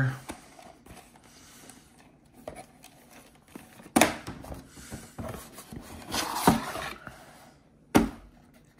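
Cardboard toy packaging being handled on a table: a knock about halfway through as a small box is set down, then scraping and rustling as the figure's tray is pulled from its box, ending in a sharp tap.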